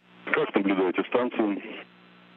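A voice speaking over a narrow-band radio link, with a steady low hum under it; the speech stops shortly before the end.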